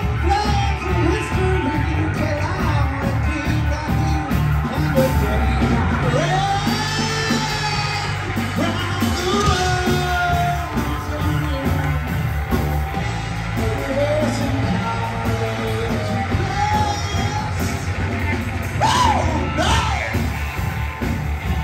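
Live rock band playing a song: electric guitar, bass guitar and drums, with a male singer's vocals over them.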